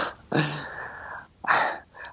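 A man laughing softly through his breath: a short voiced laugh at the start, then a long breathy exhale and a second, shorter puff of breath about one and a half seconds in.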